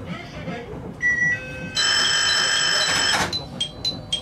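An electronic station warning signal: a short beep about a second in, then a loud, steady buzzer-like alarm tone for about a second and a half, which gives way near the end to a quick, repeating high chime of about three strokes a second.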